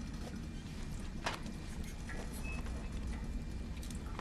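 Film soundtrack ambience of a submarine interior: a low steady rumble with a few faint knocks and one brief high tone about two and a half seconds in.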